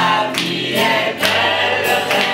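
Mixed choir of men's and women's voices singing together in French, live on a small stage.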